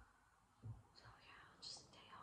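Faint whispered speech close to the microphone, with a soft low thump about two-thirds of a second in.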